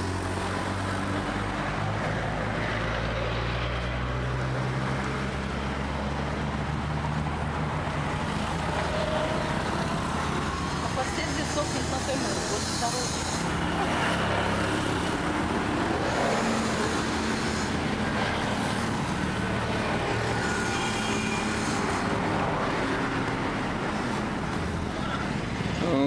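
Road traffic on a busy multi-lane road: a steady rumble of passing cars and motorcycles, with a low engine hum that is strongest in the first few seconds.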